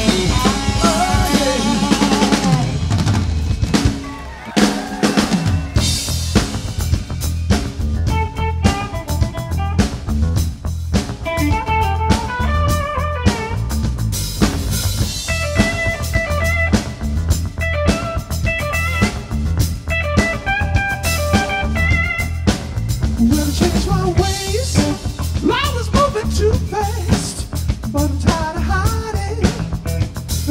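Live blues-rock band playing an instrumental stretch, with drum kit and bass guitar driving a steady beat under a melodic lead line. The band thins out briefly about four seconds in, then the full beat comes back in.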